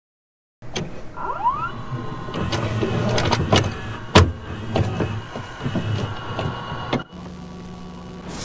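Mechanical clicks, clunks and motor whirring of a VHS video player as a cassette loads and starts, with a short rising whine early on and one loud clunk about four seconds in. Near the end it cuts abruptly to a steady low electrical hum.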